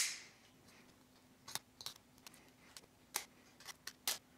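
A sharp click at the start as a Milwaukee Fastback folding utility knife's blade locks open, then the blade shaving slivers off a wooden toothpick: a run of faint, short clicks about every half second.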